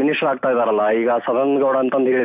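Speech: a man talking over a telephone line, his voice narrow and tinny.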